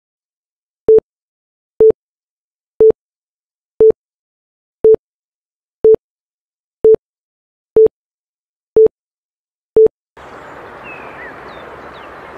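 Countdown leader beeps: ten short, identical single-pitch beeps, one each second, with silence between them. About ten seconds in they stop and a steady hiss begins, with a couple of faint chirps.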